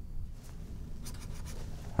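Felt-tip marker scratching across paper in many short back-and-forth strokes, drawing a jagged run-chart line; it starts about half a second in.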